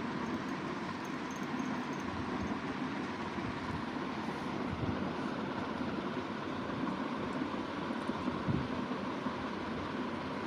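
Steady background noise with a low rumble and a faint continuous hum, unchanging throughout.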